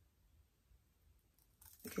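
Near silence: room tone, with a faint short sound near the end just before speech resumes.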